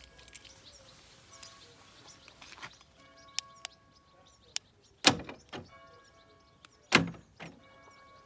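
Newly fitted replacement central-locking door actuators on a VW T4 van clunking twice, about two seconds apart, as the door locks are worked by the remote key fob.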